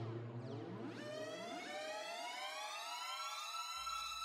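Synthesized logo-sting sound effect: falling synth sweeps over a low steady tone die away, then from about a second in a cluster of synth tones glides slowly upward in a rising swell.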